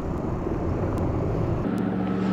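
Military helicopter flying at a distance: a steady rotor and engine rumble. It cuts off near the end, giving way to a steadier, lower hum.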